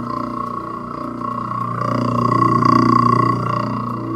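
Kitchen sink garbage disposal running, a steady low motor hum that grows somewhat louder about two seconds in.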